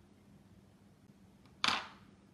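Quiet room tone, then one short, sharp handling noise near the end, like a small tool or object knocked against the work board.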